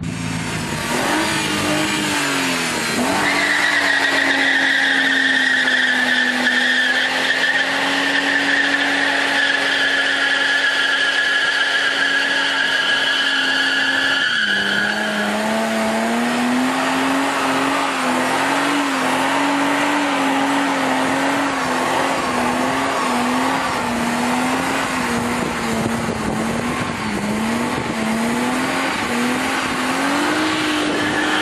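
BMW E36 saloon's straight-six doing a burnout: the engine is held at high revs while the rear tyres spin with a steady, high tyre squeal. About halfway through, the squeal stops and the engine note drops, then rises and falls unevenly as the smoking car keeps moving.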